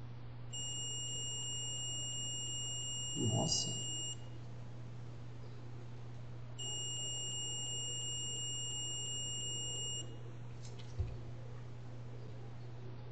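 Digital multimeter's continuity buzzer sounding a steady high beep twice, each about three and a half seconds long, as its probes touch a laptop motherboard coil: the coil reads close to zero ohms to ground. A brief low sound falls inside the first beep and a short click comes near the end, over a steady low hum.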